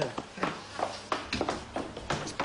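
Quick, irregular footsteps and shuffling on a hard floor as several people hurry through a doorway.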